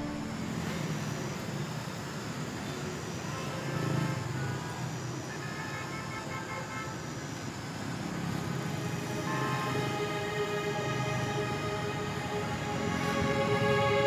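Street traffic noise of passing vehicles, with soft background music that grows louder in the last few seconds.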